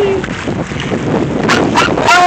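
A dog's long, falling whine trails off just after the start. About a second and a half in come two short, sharp cries, over wind noise on the microphone.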